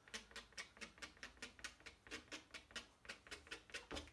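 Edge of a metal palette knife tapping and dabbing on watercolour paper, laying in stone-wall marks: a rapid, slightly uneven run of faint light ticks, several a second.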